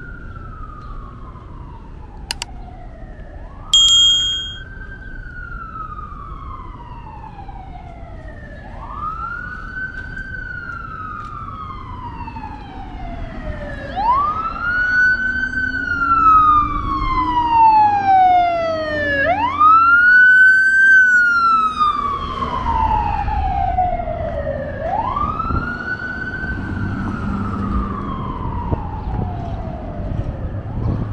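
An emergency vehicle siren on a wail pattern. Each cycle rises quickly and falls slowly, repeating about every five seconds and growing louder toward the middle. A second siren with faster sweeps overlaps it for several seconds in the middle. A bicycle bell dings once about four seconds in.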